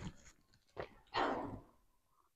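A short, breathy exhale, about half a second long, a little after a faint click, about a second in.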